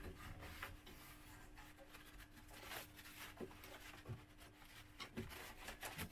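Faint rubbing of a paper towel wiping oil and carb cleaner off the inside of a generator's frame, with a few light ticks, over a faint steady hum.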